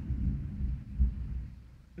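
Low bass rumble from a passing vehicle playing loud bass, swelling about a second in and fading away near the end.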